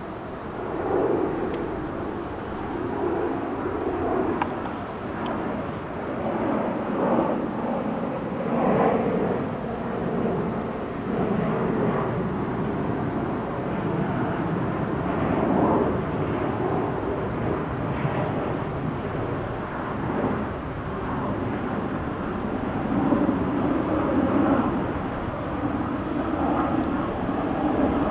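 Honey bees buzzing at the hive: a steady hum that swells and fades every couple of seconds as the bees move about close by.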